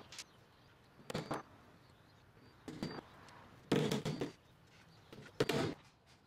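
Hammer tapping finish nails into wooden roof trim through pre-drilled pilot holes, in four short bouts of taps with pauses between.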